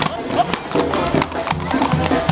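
Shod horses' hooves clattering irregularly on a paved street, with music and voices in the background.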